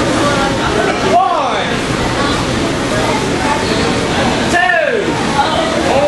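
Spectators at a small indoor wrestling show, a steady din of crowd noise with individual fans yelling: long drawn-out shouts that rise and then fall in pitch, one about a second in and another near the end.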